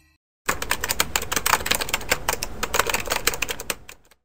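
Rapid typing sound effect: a dense, quick run of keystroke clicks that starts about half a second in and fades out near the end.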